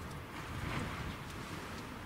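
Faint outdoor background: a low wind rumble on the microphone under a steady hiss, with no distinct event.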